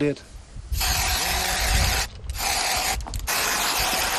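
Three steady hissing bursts, one after another, each about a second long, with sharp starts and stops.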